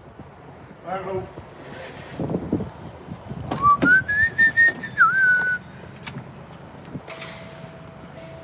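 A person whistles one rising note that levels off and holds for about two seconds, with a short dip near its end. Knocks and bumps come from climbing into a truck cab, and a steady electronic beep-tone starts near the end.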